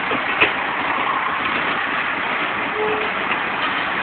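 Passenger train rolling slowly past at close range: a steady noise of wheels and running gear on the rails, with a sharp click about half a second in.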